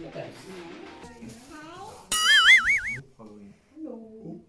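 An edited-in cartoon sound effect: a bright chiming tone with a fast warbling pitch, about two seconds in and lasting about a second, over quiet murmured talk.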